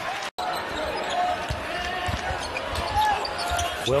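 Arena game sound from a basketball game: a ball being dribbled on a hardwood court and a few short sneaker squeaks over steady crowd noise. The sound drops out for an instant just after the start, at an edit cut.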